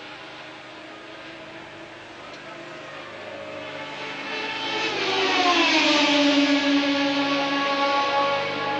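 1981 Formula One car engines, the Renault turbo among them, running past the trackside microphone. The sound is faint at first and grows to its loudest about six seconds in, with the engine pitch dropping as the cars go by.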